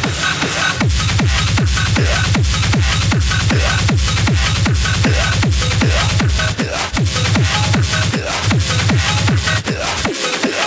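Hard techno (schranz) played loud, with a fast, steady four-on-the-floor kick drum, each kick's pitch dropping sharply, under busy upper percussion and synth layers.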